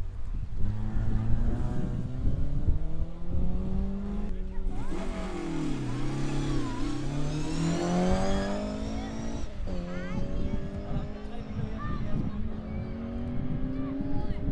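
Rally cars accelerating hard out of a chicane one after another, engines revving up through the gears with quick gear changes. The loudest is a Mk2 Ford Escort passing close about halfway through.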